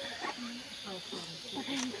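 Quiet conversation in Thai close to the microphone, over a steady high-pitched hiss of forest insects.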